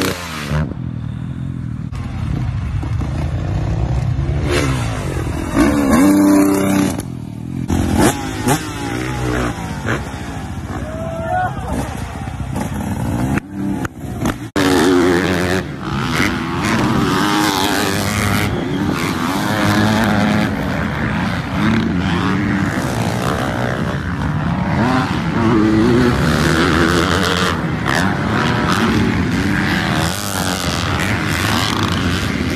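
Motocross dirt bike engines revving up and down as riders jump and corner, with a hard cut about halfway through to a louder clip; people's voices are mixed in.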